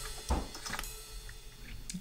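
Faint handling noise from a hand working the plastic latching mechanism on an electronic drum kit's cymbal arm: a soft knock a moment in, a few light ticks, and a sharp click near the end.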